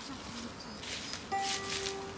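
Dry fallen leaves rustling in short bursts as chestnuts are picked up by hand from the forest floor. Partway through, a steady held musical note joins in.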